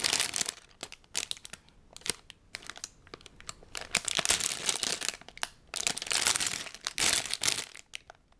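Clear plastic bags full of LEGO pieces crinkling as they are handled, in several bursts with quieter stretches between.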